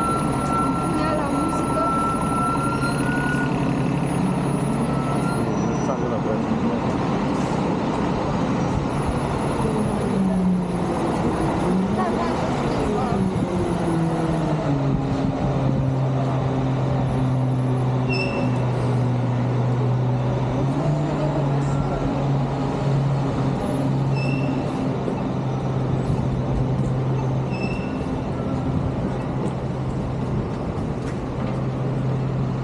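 City street traffic led by a heavy vehicle's engine: its pitch dips, rises and falls about ten to fifteen seconds in, then settles into a steady low hum. A few short high beeps sound near the end.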